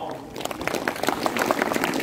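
Audience applause breaking out about half a second in: many hands clapping at once, at the close of a speech.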